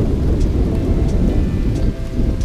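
Wind buffeting the camera's microphone, a loud, uneven low rumble.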